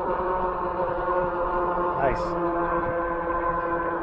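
The 1000-watt electric motor of an EUY K6 Pro folding fat-tire e-bike whining steadily at a cruise of about 22 mph, with wind rumble on the microphone.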